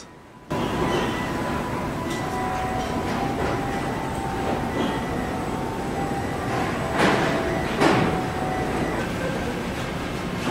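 Car assembly plant machinery: a steady industrial hum with faint whining tones, starting about half a second in. Two sharp metallic clacks come about seven and eight seconds in.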